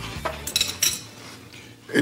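Tableware clinking: a few sharp clinks of cutlery, dishes and glasses about half a second in, as background music fades out.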